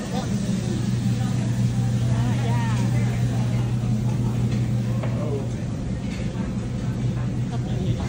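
Restaurant ambience: a steady low hum with indistinct voices of other diners in the background.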